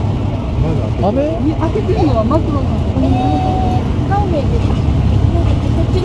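Police motorcycles and patrol cars of a motorcade passing slowly, their engines a steady low rumble, with several bystanders' voices talking over it.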